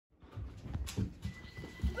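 Room sound with a few irregular soft thumps, like footsteps and movement on a wooden floor, after a moment of dead silence at the start.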